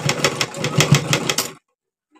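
Sewing machine stitching, the needle running at about seven strokes a second, then stopping about one and a half seconds in.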